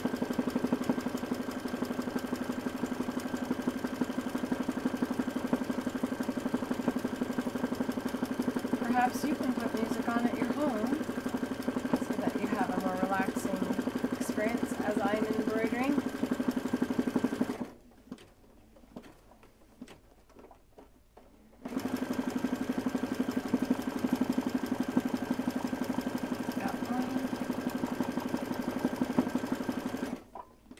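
Home sewing machine running fast for free-motion embroidery: a steady motor hum with a rapid needle rhythm. It stops suddenly a little over halfway through, is silent for about four seconds, then starts up again.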